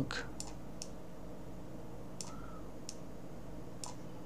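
Sparse light clicks, about six in four seconds at uneven spacing, from a stylus tapping a touchscreen as handwriting is entered, over a steady low electrical hum.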